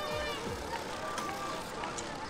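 Film soundtrack music with held notes fading out in the first half-second, giving way to busy street ambience with indistinct background voices.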